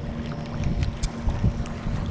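Wind rumbling on the microphone while a spinning reel is cranked, reeling in a hooked fish, with a steady low hum underneath and a few faint clicks.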